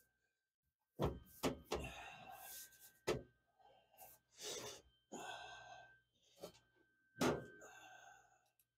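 New sheet-metal floor pan being pressed and worked down by hand, giving a handful of sharp thunks and knocks (the loudest about a second in, near three seconds and about seven seconds in) with scuffing and rubbing in between.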